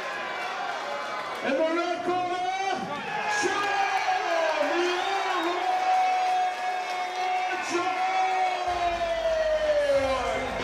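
A ring announcer's voice over the microphone, calling out the winner's name in long, drawn-out held notes, over a cheering crowd.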